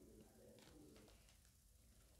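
Near silence, with a faint, low bird call in the background.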